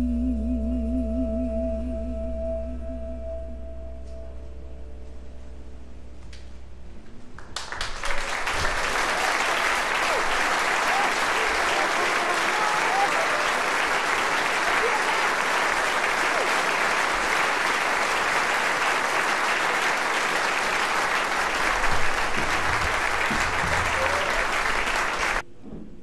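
The band's last held notes, one with vibrato over a low bass note, fade away over the first several seconds. Then a concert audience applauds steadily until the sound cuts off abruptly just before the end.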